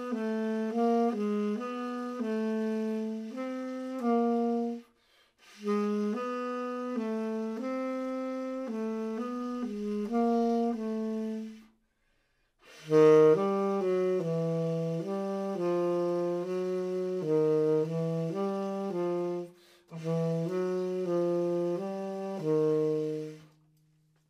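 Tenor saxophone played solo: four phrases of quick notes, each moving about inside the span of a major third in a non-repeating order, separated by short breaks. The later phrases sit a little lower in pitch.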